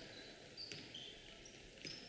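Faint gymnasium ambience with a few short, high sneaker squeaks on the hardwood court floor.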